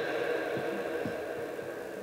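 The amplified voice of a man preaching dies away in the long reverberation of a large church, over a steady hum from the sound system. The reverberation fades slowly through the pause.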